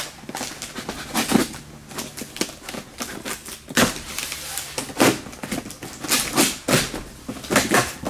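Packing tape being ripped and peeled off a cardboard shipping box, with irregular crackling and several sharp, louder rips as the tape holds fast.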